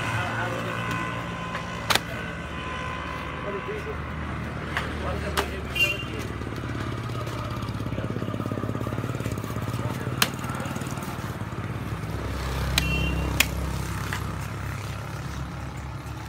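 A kukri cutting through a pork carcass, with a handful of short sharp knocks from the blade spread through the cutting. A low rumble runs underneath, swelling twice.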